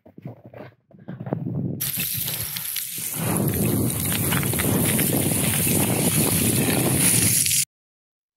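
Footsteps on snow, then a fast, continuous crunching and sliding of loose, crumbly scree underfoot from about a second in as someone hurries down a rock slope. It cuts off suddenly shortly before the end.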